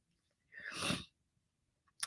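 A woman sneezing once into her hand: a single short, breathy burst about half a second in.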